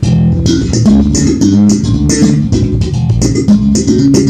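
Music Man five-string Bongo electric bass strung with R.Cocco stainless steel strings, gauge 40–120, played fingerstyle. It plays a quick line of notes that starts at once, each note with a sharp, bright attack. The strings are well played in, about a month old, and still sound bright.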